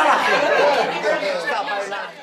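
Many people talking over one another, crowd chatter in a dining room, growing a little quieter toward the end.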